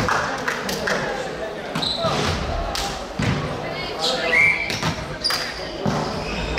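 Indoor volleyball game: repeated sharp thumps of the ball and play on the court, mixed with players' voices calling, echoing in a large sports hall.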